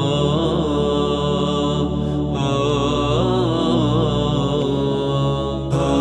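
Music: the backing of an Albanian ilahi, wordless chant-like vocals gliding over a low held drone, with no lyrics sung. There is a brief drop near the end.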